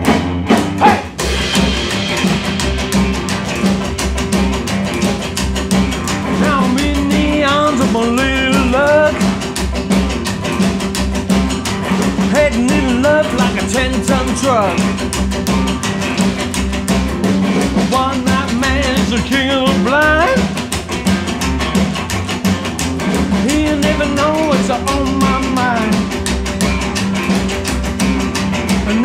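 Rockabilly band playing an instrumental break: an electric guitar lead with bent notes over strummed acoustic guitar, upright bass and a steady drum beat.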